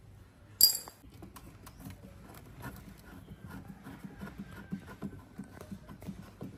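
A sharp metallic clink, then faint small clicks and scrapes of a screw being turned in by hand with a screwdriver through the plastic front fairing of a scooter.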